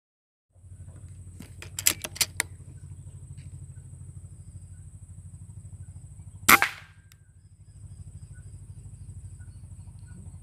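A single air rifle shot about six and a half seconds in, one sharp crack with a short tail, preceded by a few quick sharp clicks about two seconds in. A steady low pulsing hum and a thin high whine run underneath.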